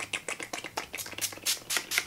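Murad Hydrating Toner's pump-spray bottle misting onto the face in a rapid run of short spritzes.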